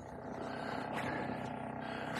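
Narrowboat engine idling steadily, with a faint knock about halfway through.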